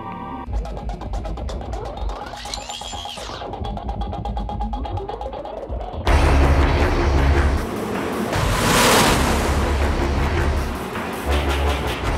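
Dramatic music with held tones and a rising glide. About halfway through, a sudden loud rush of a small hatchback's engine and tyres bursts in, with a surge of splashing water spray as the car races through a wet sewer tunnel.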